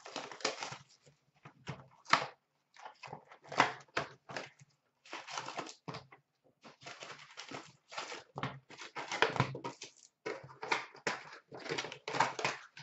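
Cardboard trading-card boxes being opened and their packs pulled out and stacked by hand: irregular rustling and scraping in short bursts with brief pauses.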